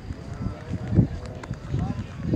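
Several dull, irregular thumps of footsteps and phone handling from someone moving while filming, the loudest about halfway through, with faint voices talking in the background.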